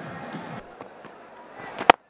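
A short wash of noise, then near the end a single sharp crack of a cricket bat striking the ball as the batter swings.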